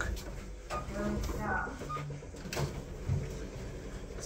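Low steady hum inside a lift car, with two light clicks and a few faint murmured words.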